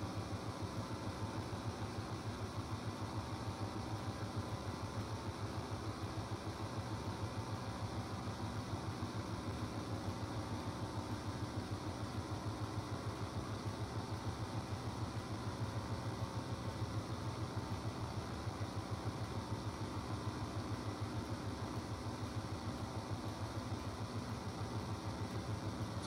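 A steady low machine hum with a fast, even throb, unchanging throughout.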